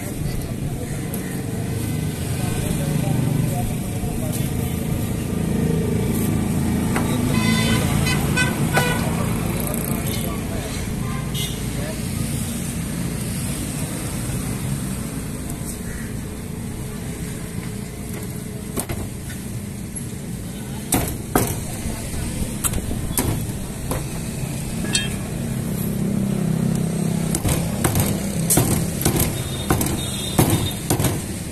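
Street ambience with a steady traffic rumble and indistinct voices. About two-thirds of the way through, a scattering of sharp knocks begins and grows more frequent near the end.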